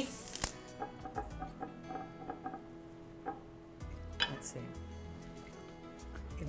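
Soft background music with steady held notes, with a couple of sharp clicks, about half a second in and again about four seconds in, from a chef's knife slicing a meatloaf on a marble board.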